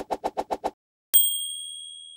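Typewriter sound effect: rapid even keystrokes, about eight a second, stop just under a second in, followed by a single bright bell ding that rings on and slowly fades.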